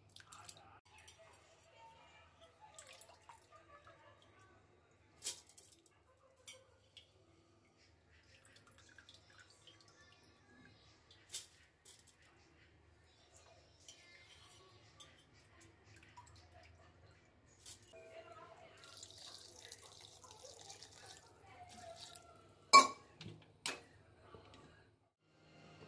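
Wet soaked rice being handled and transferred from a steel bowl of water into a steel blender jar: water dripping, with scattered small clicks and taps. Near the end comes a sharp metallic clink, the loudest sound, followed by a second smaller one.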